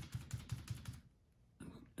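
Synthetic closed-cell packing sponge dabbed up and down in acrylic paint on a palette, working the paint into the sponge: a quick run of light taps, about six a second, that stops about a second in.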